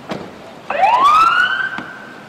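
Police car siren giving a short burst: a tone that sweeps up in pitch, then levels off and holds for about a second.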